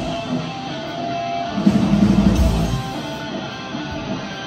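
Live heavy metal band playing: electric guitar carries a sparser passage with the drums mostly dropped out, and a low rumble swells up about halfway through.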